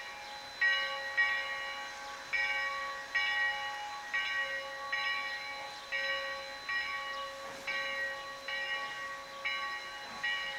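Steam locomotive's bell ringing steadily, struck at an even pace of about three strokes every two seconds, each stroke ringing on into the next.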